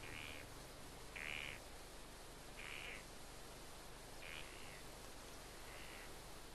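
Faint animal calls: about five short calls, one roughly every one and a half seconds, over a steady low hiss.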